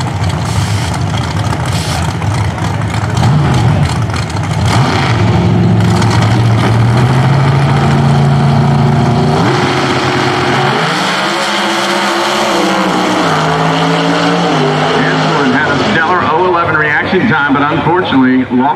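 Two Pro Outlaw 632 drag cars with naturally aspirated big-block V8s rev at the starting line, their pitch climbing. About halfway through they launch and pull away, the engine note rising again in steps through the gear changes.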